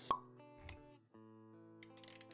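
Intro music with steady held notes, and a sharp pop sound effect just after the start followed by a short low thud a little over half a second in.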